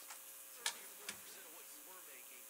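Two short sharp clicks as a plastic water bottle is handled, the louder about two-thirds of a second in and a weaker one about half a second later, over a faint murmur of voices.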